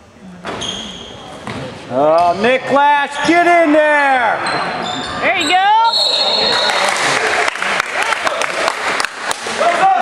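Spectators in a school gym yelling during basketball play, with a referee's whistle blown once about six seconds in. After that comes a loud, noisy crowd over sharp knocks of the basketball bouncing on the hardwood court.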